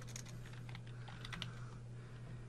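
A few faint computer keyboard keystrokes in short quick groups, over a low steady hum.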